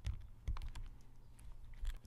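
Several small, sharp clicks and taps of metal parts being handled: tiny screws and the aluminium reel frame knocking lightly on the work surface. The loudest come about half a second in and near the end.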